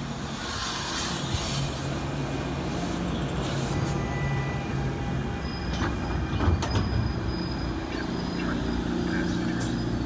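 NJ Transit Arrow III electric multiple-unit train pulling in and slowing to a stop, with a steady low motor hum. A cluster of wheel clicks and knocks over the rails comes just past the middle, and a thin high brake squeal begins about halfway in.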